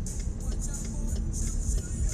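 Steady low rumble inside a stopped car's cabin, with faint music playing.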